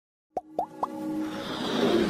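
Intro sound effects for an animated logo: three quick pops, each rising in pitch, then a swelling whoosh that builds toward the end.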